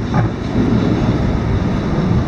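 Steady low wind rumble buffeting the microphone while moving along a path.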